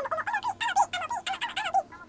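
A rapid string of about a dozen high-pitched, squeaky, chirping voice sounds, gibberish for a plush teddy bear. It stops abruptly near the end.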